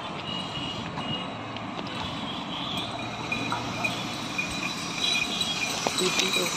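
Crickets chirping over the steady rumble of an approaching passenger train, growing slowly louder.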